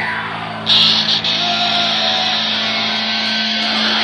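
Heavy metal band playing live, with distorted electric guitar holding a low note. There is a loud crash about two-thirds of a second in.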